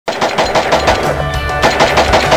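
Rapid rifle fire, about six shots a second, with a short pause a little after a second in, laid over intro music with a steady bass.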